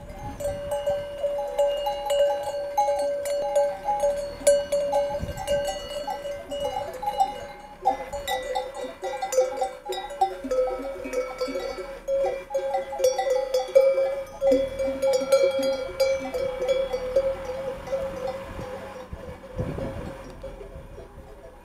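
Many bells worn by a grazing flock of sheep, ringing and clanking together with lots of overlapping tones.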